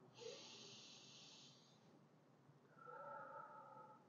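Near silence with a man's faint breathing: a soft breath hiss over the first second and a half, then a fainter breath with a slight hum to it about three seconds in.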